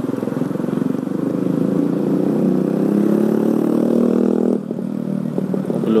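Motorcycle engine heard from on board while riding, accelerating with its pitch climbing steadily for about four and a half seconds, then dropping off suddenly to a lower, rougher running.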